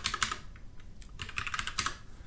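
Typing on a computer keyboard: two short runs of key clicks, the second starting a little over a second in.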